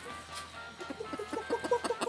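Kadaknath rooster clucking, a quick run of short notes starting about half a second in, over background music.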